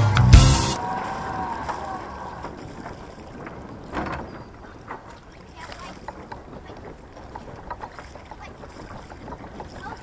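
Background music ends with a loud burst in the first second. It gives way to quiet outdoor ambience aboard a moored sailing yacht: a steady wash of wind and water with scattered small knocks from someone working on deck, the clearest about four seconds in.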